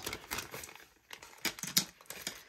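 Plastic packaging crinkling and rustling as a small plastic pouch is opened and its contents are handled, in irregular bursts with a quieter stretch about a second in.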